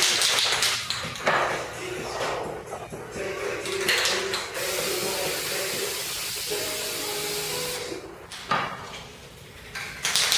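Aerosol spray-paint can hissing: several short bursts, then one steady spray of about three seconds that stops about eight seconds in.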